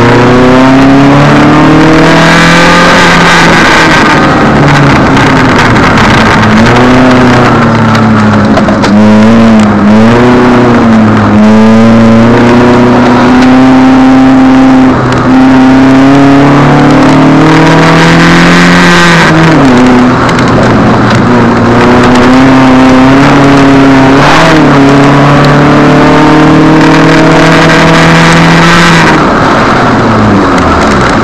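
Proton Satria Neo's four-cylinder engine, heard loud from inside the cabin, pulling hard with its pitch climbing slowly for several seconds. The pitch drops sharply a few times, as at gear changes or lifts off the throttle.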